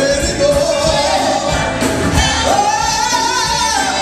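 Women's gospel group singing live with a backing band that includes electric guitar. A lead voice holds one long note, then steps up about halfway through to a higher note held with vibrato until near the end.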